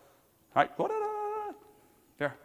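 Speech only: a man's voice saying a drawn-out "all right", the vowel held for about half a second.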